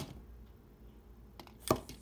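Small plastic toy figures knocking together: a faint click about one and a half seconds in, then a sharper knock just after, as a swinging figure hits the others.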